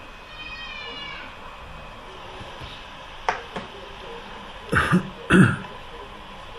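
A man coughs twice in quick succession near the end, over the steady road noise inside a moving car. Earlier, a short high-pitched squeal rises and falls, and a little after three seconds there are two small clicks.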